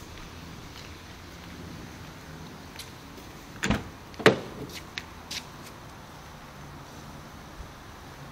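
Passenger door of a Honda S2000 being opened: two sharp latch clicks about half a second apart near the middle, then a few lighter clicks and knocks, over a steady low hiss.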